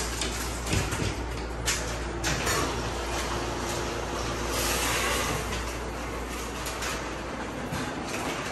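A steady low machine hum with a few light clicks and knocks in the first few seconds; the hum cuts off near the end.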